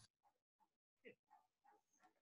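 Near silence: room tone, with only a very faint brief sound about a second in.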